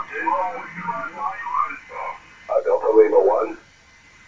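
Single-sideband voice received on the 20-metre amateur band through an Icom IC-7851 transceiver in upper sideband: thin, band-limited speech with no low bass, its loudest stretch about two and a half seconds in.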